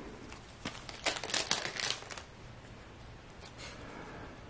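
Cardboard hockey trading cards being handled and flicked onto a stack: a quick run of small clicks and rustles about a second in, then fainter handling.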